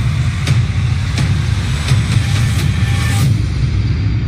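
Tense TV documentary underscore: a low rumbling drone with sharp ticks about every 0.7 seconds.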